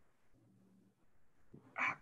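A pause in a man's talk over a video call: near silence with a faint low hum for under a second, then his voice starting up again near the end.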